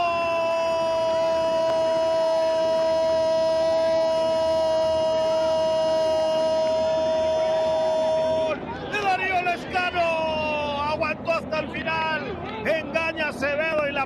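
A football commentator's goal cry for a converted penalty: one long held note lasting about eight and a half seconds, followed by rapid excited shouting.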